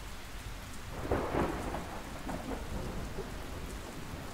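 Steady rain with a rumble of thunder swelling about a second in: storm ambience on a film soundtrack.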